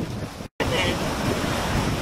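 Shallow ocean surf washing around the feet, mixed with wind buffeting the microphone; the sound cuts out completely for a moment about half a second in.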